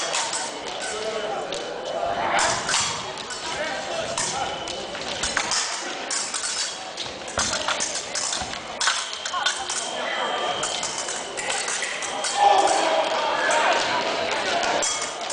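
Épée fencing bout: blades clicking and clashing and feet stamping on the piste in a reverberant sports hall, over people's voices.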